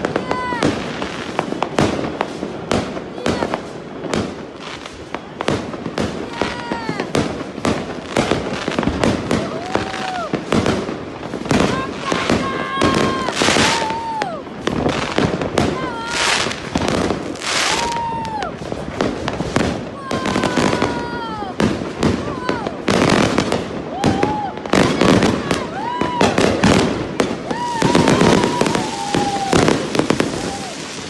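Fireworks going off in quick succession: a dense run of bangs and crackles. Over them come many short, high calls that rise and fall, from people.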